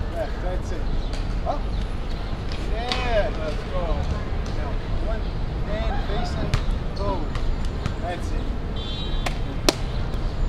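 Outdoor ambience: a steady low rumble with short rising-and-falling vocal sounds every second or so, and a sharp click near the end.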